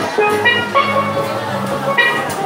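Steelpan music: pans playing a quick run of struck, pitched notes over a sustained low accompaniment.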